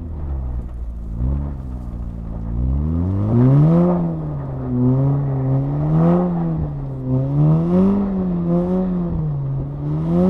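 2018 VW Golf R's turbocharged 2.0-litre four-cylinder engine, fitted with a cold air intake and resonator delete, heard from inside the cabin. The revs climb about a second in and again near four seconds, then rise and fall repeatedly under the throttle.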